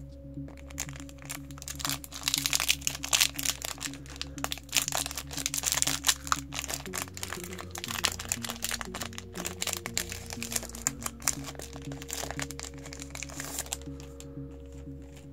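A foil trading-card booster pack wrapper crinkling and crackling as it is torn open by hand, busiest in the first half, over steady background music.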